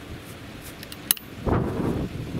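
A single sharp metallic click about a second in as a break-action 12-gauge shotgun is broken open after firing, followed by wind buffeting the microphone.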